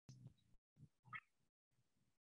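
Near silence, broken by three faint, very short sounds, the last a brief high chirp about a second in.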